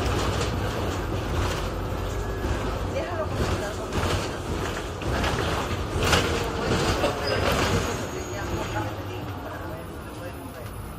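Cabin noise inside a moving EMT Madrid city bus: a steady low engine hum with rattles and knocks from the body, growing louder in the middle and easing off near the end.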